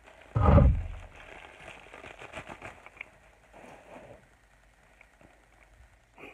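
A loud, deep clunk about half a second in, then bubble wrap crinkling and crackling with small clicks as it is pulled off a resin ball-jointed doll, dying away over the last couple of seconds.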